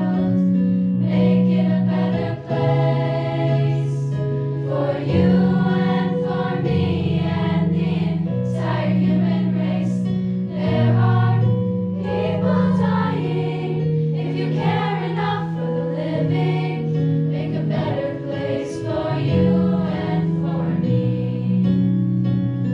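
A choir of girls singing a song together, with held low notes underneath that change every few seconds.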